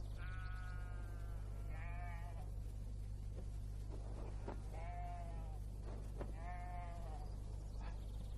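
Sheep bleating: four separate calls a second or two apart, over a steady low hum.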